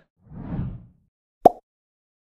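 Animated end-screen sound effects: a soft, low whoosh, then one sharp pop about one and a half seconds in.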